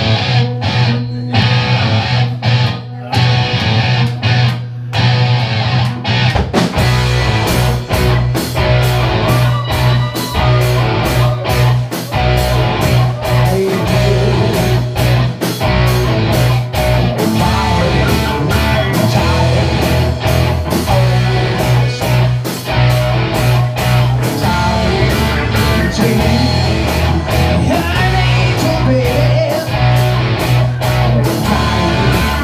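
Live rock band playing with electric guitars, bass and drums: a guitar-led opening, then the full band with drums and cymbals comes in about six seconds in and plays on steadily and loud.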